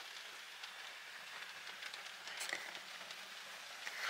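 Steady rain on a car's roof and windows, heard from inside the car, with a few faint ticks about halfway through.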